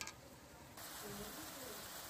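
Faint sizzling of spiced mutton frying in a wide iron karahi while it is browned (kasha), with a small click near the start.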